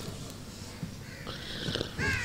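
A man weeping quietly into a cloth: rough, breathy sobbing with a short hiss of breath in the second half.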